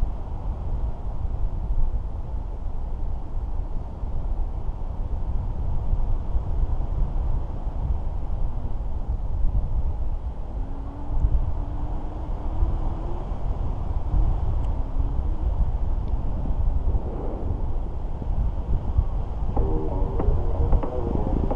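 Wind buffeting the camera's microphone during a tandem paraglider flight: a loud, steady low rumble that swells and eases with the gusts.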